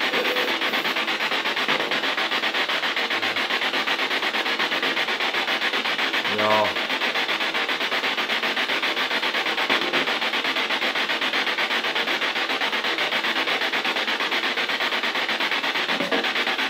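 Loud, steady rasping noise with a fast, even pulse. About six and a half seconds in comes one short voice-like sound.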